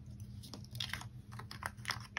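Faint crinkling and light clicking of a paper sticker sheet being handled and stickers being picked off with tweezers, the clicks coming more often toward the end, over a low steady hum.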